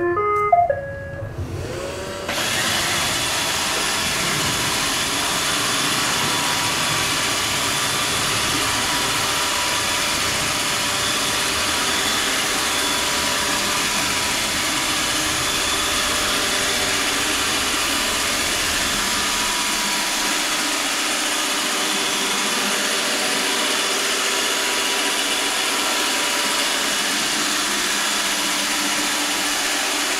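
iRobot Roomba 637 robot vacuum sounding a few short electronic tones as its spot-clean cycle starts, then its vacuum motor and brushes start abruptly about two seconds in and run steadily as it cleans in circles. The low rumble thins out about two-thirds of the way through.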